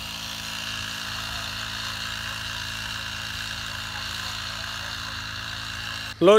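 Small petrol engine of a backpack mist-blower sprayer running steadily at even speed while it blows pesticide mist over a wheat crop.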